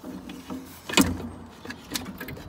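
Metal knocks and clatter as the fan assembly of a Worcester Greenstar gas boiler is lifted and wiggled free of its seat, with one sharp, loud knock about halfway through.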